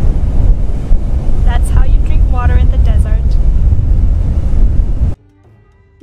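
Strong wind buffeting the camera microphone, a loud, ragged low rumble, with a woman's voice briefly heard under it. It cuts off suddenly about five seconds in.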